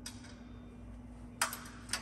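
A few short, sharp metallic clicks, the clearest about one and a half seconds in, from bolts, nuts and washers being handled on a gyroplane rotor mast, over a faint steady hum.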